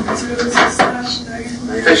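Speech: a woman talking, with a few short, sharp clicks among the words.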